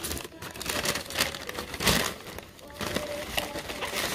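Brown paper bag crinkling and rustling in irregular bursts as it is handled and opened, the loudest burst about two seconds in.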